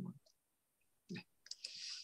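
Faint clicks at the computer as the text cursor is moved, a few in quick succession about a second and a half in, followed by a brief soft hiss.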